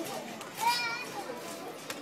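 Children's voices and chatter, with one child's high-pitched, wavering call a little over half a second in.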